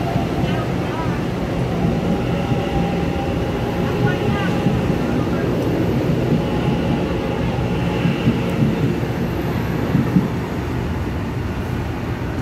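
EMU900 electric multiple unit commuter train running out of an underground station platform: a steady rumble of wheels on rail with a few steady motor tones over it.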